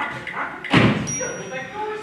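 A single loud thump on the wooden stage set, with voices speaking quietly before and after it.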